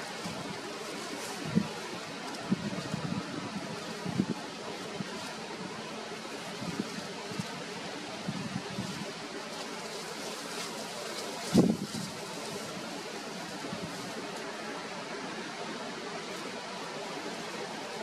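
Steady outdoor background noise picked up by a handheld camera's built-in microphone, broken by a few soft knocks and rustles from the hand holding it. The loudest knock comes about halfway through.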